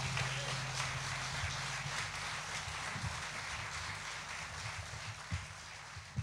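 Theatre audience applauding at the end of a song, a dense patter of clapping that slowly fades out. The band's last low chord rings under it for the first couple of seconds.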